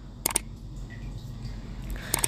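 Mouse-click sound effects from an animated subscribe button: a quick double click about a quarter second in, over a faint low hum.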